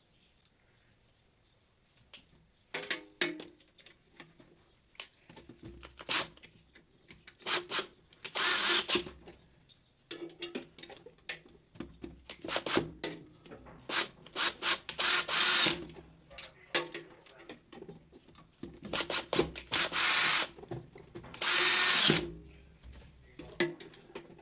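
Cordless drill-driver with a screwdriver bit, run in about nine short bursts starting a couple of seconds in, driving a contactor's terminal screws down onto the phase wires; the longer bursts carry a high motor whine. Small clicks of handling come between the bursts.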